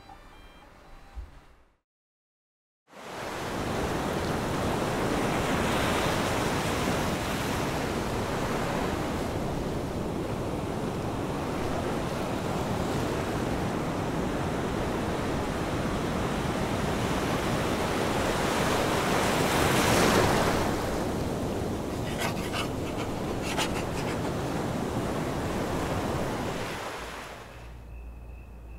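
Ocean surf washing onto a beach: a steady rushing wash that comes in suddenly about three seconds in after a moment of silence, swells to its loudest about two-thirds of the way through, and fades out near the end.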